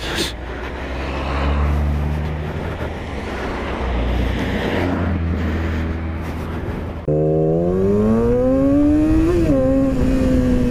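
Motorcycle riding with wind rush over the helmet and a low, steady engine note. About seven seconds in it cuts abruptly to a Yamaha R6 sport bike's inline-four engine accelerating, its pitch rising steadily, with a short dip about nine seconds in as it shifts gear.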